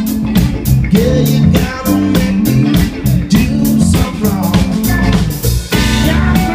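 Live soul band jamming without a singer: electric guitar and drum kit playing a steady beat over a moving low line. Near the end the trombone and trumpet come in with held notes.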